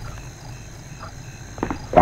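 A few soft footsteps over quiet room tone, with two close together near the end.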